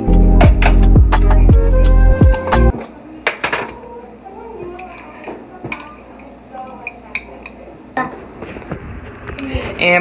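Music with a deep, sliding bass plays loudly for the first few seconds and then stops. After that comes quieter kitchen clatter: scattered clinks and knocks of plates and a glass jelly jar being handled and opened.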